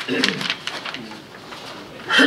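A low, murmured voice, briefly, like a hummed "mm", with a little paper rustling at the start as papers are handed round.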